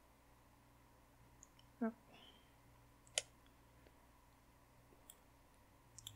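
Faint room tone with a few light clicks of metal knitting needles and a crochet hook touching, the sharpest about three seconds in. A brief murmur of voice comes just before two seconds in.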